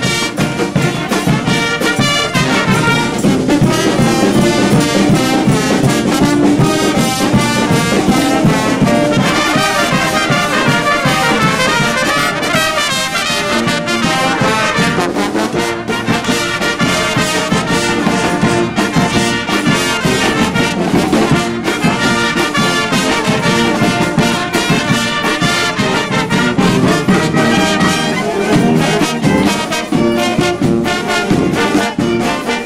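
A banda landaise, a festive street band of trumpets, trombones, saxophones and clarinets over bass drums, cymbals and snare drums, playing a lively tune with a steady drum beat.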